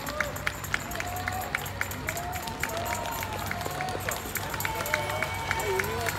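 Roadside spectators at a marathon calling out in drawn-out voices over a steady low hum, with a light regular clicking about three times a second.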